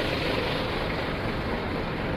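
Steady, even rumble of a bus engine running, with a faint steady hum over it.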